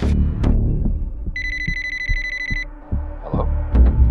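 A phone ringing once, a fast trilling ring lasting just over a second, over music with a steady low beat.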